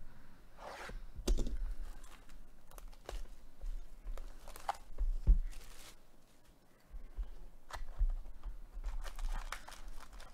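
Plastic wrap being torn off a trading-card hobby box, then the cardboard box opened and foil card packs handled: irregular crinkling and tearing with scattered knocks and thumps.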